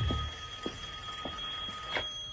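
A steady, high electronic tone, two pitches sounding together, with a soft thud at the start and a few faint ticks about half a second apart under it.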